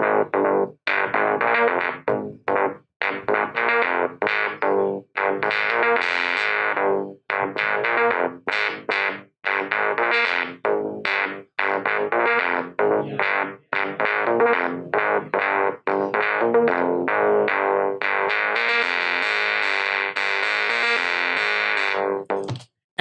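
Roland SE-02 analog monosynth playing a repeating sequence of short, separate notes. Its filter is opened and closed by pressing on an Expressive E Touché, so the notes brighten and darken. Near the end the notes run together and stay bright.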